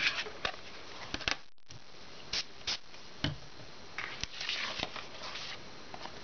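Craft materials being handled on a tabletop: an ink pad and a sheet of fun foam picked up and set down, with scattered light taps and brief rustles of paper and foam, the longest rustle about four seconds in.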